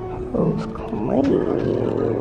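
A man's voice: a drawn-out, rough vocal exclamation beginning with 'oh', starting about a third of a second in and running on with wavering pitch.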